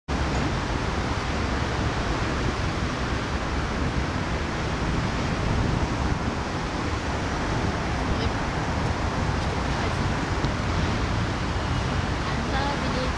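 Steady rushing noise of wind buffeting an outdoor camera microphone, with a fluctuating low rumble.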